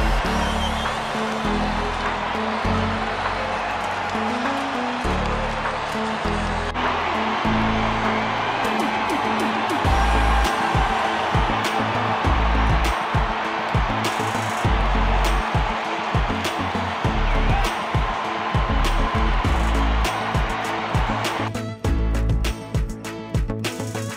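Background music with a pulsing bass line over a ballpark crowd cheering a home run. The crowd noise cuts out near the end and the music carries on alone.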